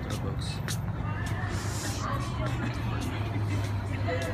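Busy shopping-centre ambience: background voices of passers-by and music over a steady low hum, with scattered short clicks.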